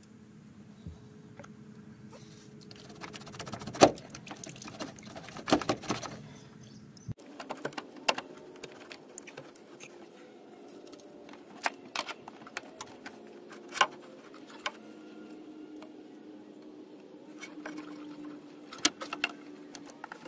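Scattered metallic clicks, clinks and knocks of hand tools and hose clamps as a Duramax intercooler charge pipe is worked loose and pulled off. The loudest knock comes about four seconds in, with a faint steady hum underneath.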